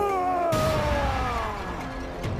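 A monstrous creature's long roaring yell, falling steadily in pitch and turning rough about half a second in, over dramatic film music.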